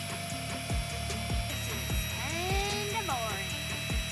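Background music with a steady beat over the steady whine of a tiny electric air pump inflating an air sleeping pad; the pump's pitch shifts about one and a half seconds in.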